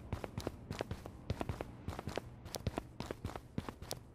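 Footsteps: a run of faint, quick, uneven steps, about three or four a second.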